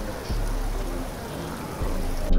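Steady background hiss of a large indoor space, with faint music underneath.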